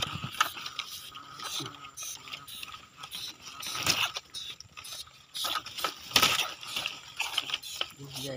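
Irregular rustling and light clicks as dry grass, leaves and a wire-mesh cage rat trap are handled at close range, with two louder rustles about halfway through and again two seconds later.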